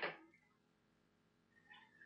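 Near silence: room tone, with one brief short sound right at the start.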